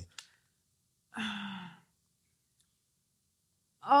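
A person's short sigh, a breathy exhale of about half a second, about a second in; otherwise near silence.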